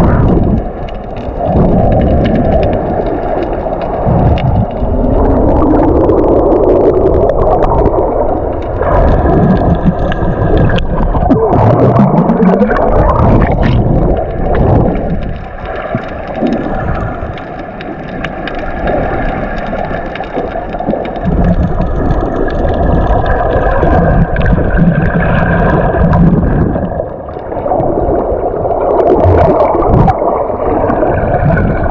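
Muffled underwater noise picked up by a submerged camera: water gurgling and rushing over the microphone with a low rumble. Two rising whine-like glides come through, one around five seconds in and another around twelve seconds in.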